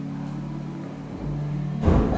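Soft background music of low, held notes that step to a new pitch a little over a second in, with a short low thump near the end.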